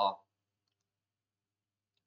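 A man's voice ends a word, then near silence with a couple of faint computer mouse clicks.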